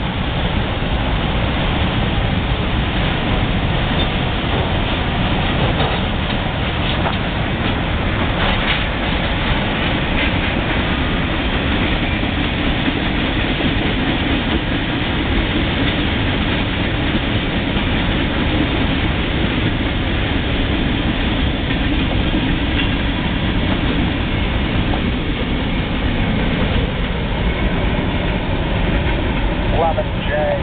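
Freight cars rolling past at a distance, heard through a steady rush of wind on the microphone that stays at one level throughout.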